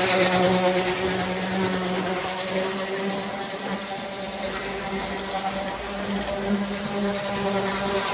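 Standard gauge Waterman Burlington Zephyr toy train running on tinplate track: a steady electric motor hum and buzz with wheel rumble, loudest as it passes close at the start, fading in the middle and building again near the end.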